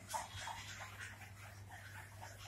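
Faint, quick rhythmic panting breaths, about three a second, from a group of seated yoga participants doing a breathing exercise, over a steady electrical hum.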